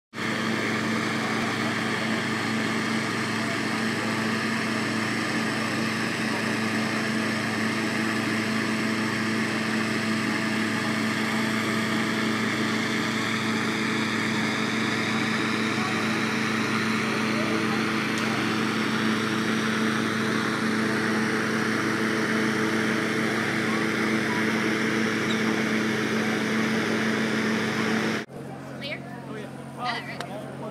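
Petrol-engine inflator fan running steadily at full speed, blowing cold air into a hot-air balloon envelope during cold inflation. A constant engine hum sits under a loud rush of air.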